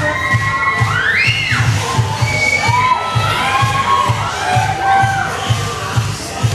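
An audience shouting and cheering over dance music with a steady bass beat.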